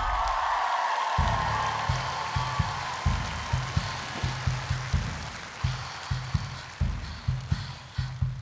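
An audience applauding and cheering, fading away over the first few seconds, as a song's intro starts about a second in with a pulsing low bass beat.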